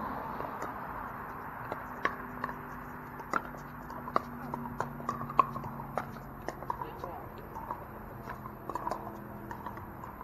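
Pickleball paddles striking a hard plastic ball: a quick, irregular run of sharp pops through a rally, the loudest about halfway through, with faint voices behind.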